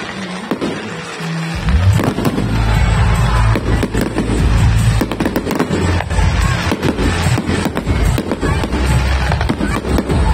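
Aerial fireworks going off in a rapid barrage of bangs and crackles, which grows dense from about two seconds in. Music plays underneath.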